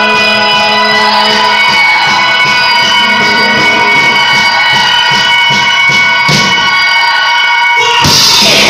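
Distorted electric guitars and bass holding a sustained, droning chord, with a light regular ticking over it.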